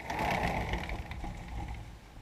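Tabby cat rubbing its head and body against the curtain right beside the camera: close rustling and scraping of fur on cloth, with a low rumble and small knocks. It sets in suddenly, is loudest in the first second, and tapers off toward the end.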